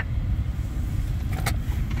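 Vehicle engine running at idle, a steady low rumble heard from inside the cab.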